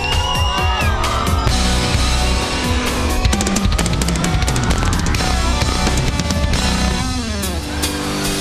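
Live rock band with full drum kit playing an instrumental passage. The drums build with a run of rapid hits in the middle, under a long, slowly rising tone, and the music changes near the end.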